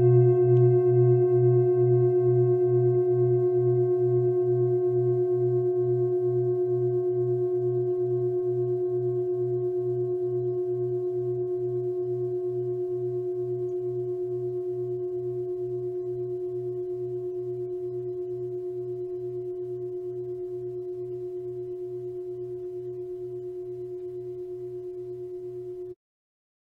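A singing bowl ringing out from a single strike, one steady clear tone with higher overtones, slowly fading. Under it a low hum pulses about twice a second. The sound cuts off suddenly at the end.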